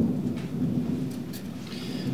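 Low, rolling rumble of thunder, with a few faint clicks from a small metal tin being handled.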